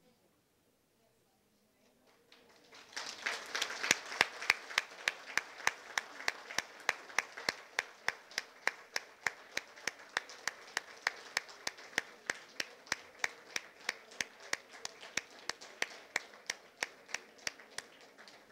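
Crowd applauding, starting about two and a half seconds in, with one pair of hands clapping close by in a steady beat of about three claps a second that stands out above the rest.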